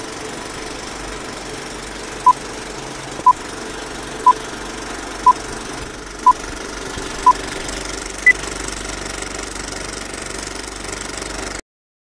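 Old film-leader countdown sound effect: a steady mechanical rattle and hiss of a running film projector, with a short beep once a second, six in all, then one higher beep. The sound cuts off suddenly near the end.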